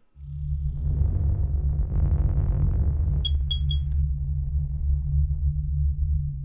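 Electronic logo sting: a deep, sustained synth drone with a rising whoosh swell, then three quick high pings about a third of a second apart just past the midpoint.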